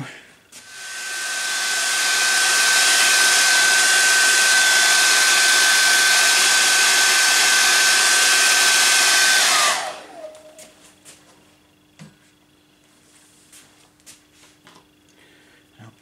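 Hand-held hair dryer blowing over a wet watercolour sheet to dry it fully: a steady rush of air with a high motor whine, building up over the first couple of seconds. After about nine and a half seconds it is switched off and the whine falls away as it winds down, leaving a few faint small clicks.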